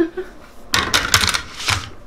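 A smartphone in a loose case handled and set down on a table: a second of rapid clattering clicks and rustling, over light laughter.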